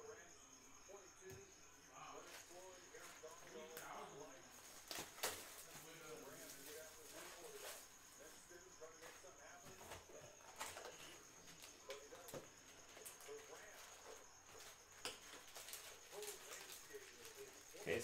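Near silence: faint scattered clicks and rustles of trading cards being handled, over a faint murmur and a steady high electronic whine.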